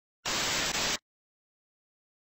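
Burst of TV-style static noise used as a glitch sound effect, lasting about three quarters of a second with a brief catch near the end before it cuts off sharply.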